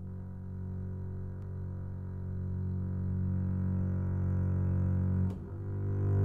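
Solo double bass played with a bow: one long sustained note that slowly swells louder. About five seconds in the bow changes and a new, louder note begins.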